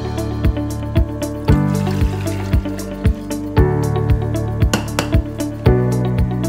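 Background music with a steady beat, about two beats a second, over sustained bass notes and chords.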